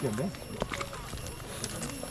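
Footsteps over dry flood debris and broken plant stalks, a scatter of irregular clicks and cracks underfoot, with a short spoken word near the start.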